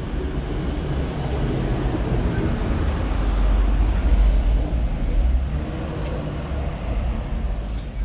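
A steady low rumble of outdoor background noise that swells for a couple of seconds around the middle.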